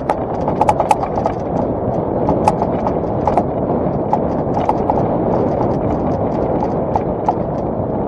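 Mountain bike rattling and clattering down a rocky trail: many irregular sharp clicks and knocks from the bike jolting over stones, over a steady rumble of tyres and wind.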